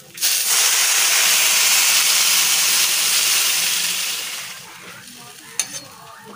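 Water poured into a hot metal kadai of fried rice, sizzling loudly as it hits the pan, then dying down after about four seconds. A brief clink near the end.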